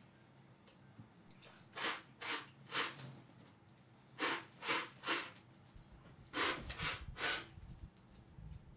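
A person forcefully spraying rum from the mouth in a ritual blessing: sharp, breathy spitting puffs in three sets of three.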